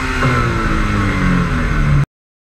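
Toyota 86's flat-four engine heard from the car. Its revs jump briefly about a quarter second in, then fall steadily as it slows. The sound cuts off abruptly at the end.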